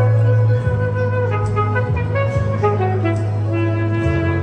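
Alto saxophone playing a slow melody of held notes over a backing track with a steady bass line and light drums.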